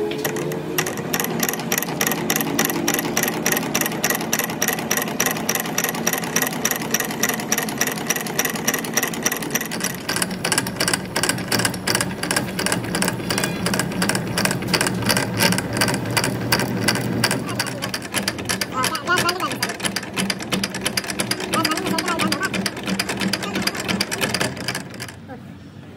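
Old metal lathe running, turning a truck rear axle shaft while a carbide-tipped cutting tool faces its end: a steady, rapid mechanical clatter with a low hum beneath it.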